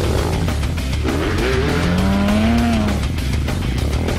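Stunt motorcycle engine revving over rock music with a steady beat; one rev rises in pitch from about one and a half seconds in and falls away near the three-second mark.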